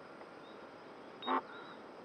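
A single short harsh bird call about a second in, over faint high chirping in the background.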